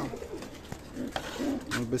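Domestic pigeons cooing in a loft, low and throaty, with a few light clicks.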